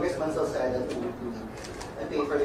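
A man's voice heard faintly and at a distance, off the microphones, asking a question in a room.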